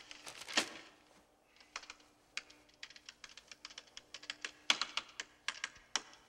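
Typing on a computer keyboard: quick, irregular runs of keystrokes over a faint steady hum, with a louder rustle about half a second in.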